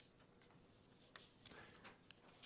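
Near silence, with a few faint clicks and a soft rustle of paper pages being handled and turned in the second half.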